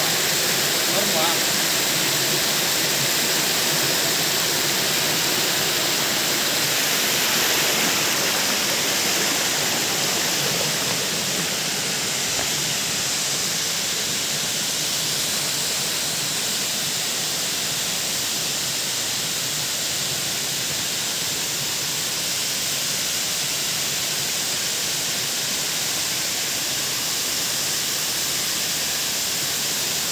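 Waterfall pouring over rock into a pool: a steady rush of falling water, easing slightly in level partway through.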